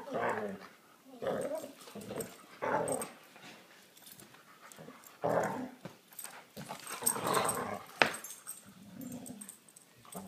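Two dogs play-fighting, growling in short bouts every second or two, with a sharp click about eight seconds in.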